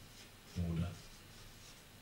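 Marker pen writing on a whiteboard: a run of short, faint scratchy strokes as a word is written.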